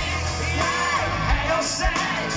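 A live pop-rock band playing with a male lead singer, heard from the audience, over a steady drum beat.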